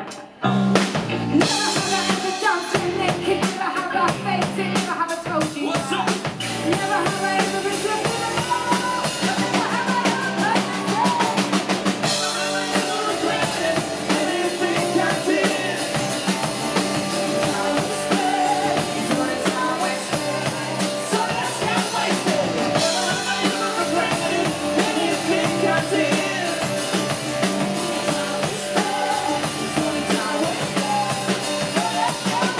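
Live country-rock band playing: drum kit, acoustic guitar, electric guitar and bass guitar. The band drops out briefly at the very start, then comes straight back in at full volume with the drums driving.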